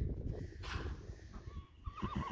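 Wind rumbling on the microphone, with the faint, wavering high call of a horse starting to whinny near the end.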